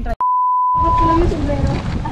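A steady, high-pitched electronic beep lasting about a second, added in the edit as a comic sound effect; voices and outdoor chatter come in under it partway through.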